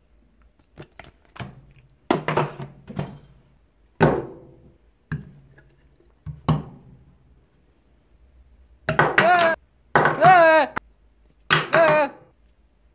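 A small metal-and-plastic mini volume pedal being handled and set down on a wooden tabletop: a run of separate hard thunks and clatters, each ringing briefly. Near the end come three short, high, wavering squeaks.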